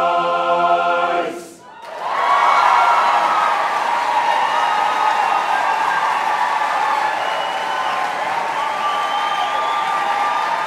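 A male a cappella barbershop chorus holds its final chord, cut off about a second in; after a brief gap the audience breaks into loud applause and cheering that carries on steadily.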